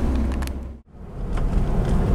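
Engine and road noise heard inside a moving car's cabin, a steady low rumble. It drops out to silence for a moment just under a second in, then comes back.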